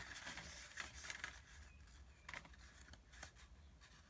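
Faint rustling and light clicking of paper slips being drawn by hand.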